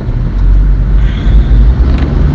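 A loud, steady low rumble of background noise.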